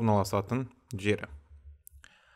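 A narrator speaking in Kazakh for about the first second, then a quieter pause with a few faint clicks.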